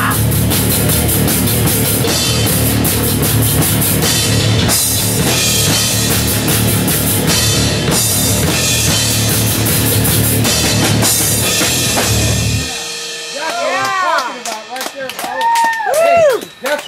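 Heavy metal band playing live: distorted electric guitars, bass and a pounding drum kit with cymbals, loud and dense, stopping abruptly about thirteen seconds in. Excited voices follow at the end of the song.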